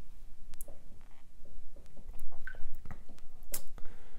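Watercolour brush working wet paint on paper and in the paint tin: small soft wet dabs and strokes, with a few sharp clicks.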